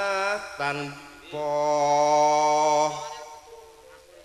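Solo voice singing a Javanese tayub song in long held notes. The first notes waver, the voice breaks off briefly about a second in, then holds one steady note and stops about three seconds in.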